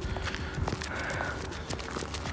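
Footsteps crunching on snow: a run of irregular, crisp crunches and clicks with a low rumble beneath.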